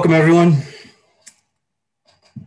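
A man's voice for about half a second, then one short click.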